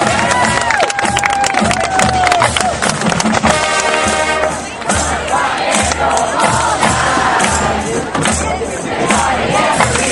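High school marching band playing on the field, with a steady bass drum beat under the brass, mixed with crowd noise and cheering from the stands.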